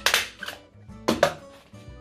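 A stapler pressed through black card, with sharp clacks about a second apart.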